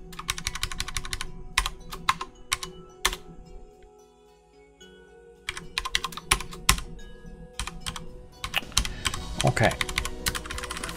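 Typing on a computer keyboard in quick runs of keystrokes, with a pause of about two seconds in the middle.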